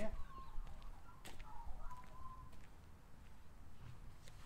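A bird calling faintly in the background, a thin wavering note over the first two seconds, with a single sharp click about a second and a quarter in.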